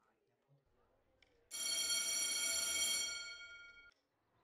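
Electric school bell ringing in one steady burst of about two and a half seconds, starting suddenly about a second and a half in and fading away just before the end.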